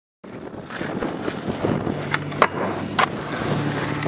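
Skateboard wheels rolling on asphalt, with two sharp clacks of the board about two and a half and three seconds in.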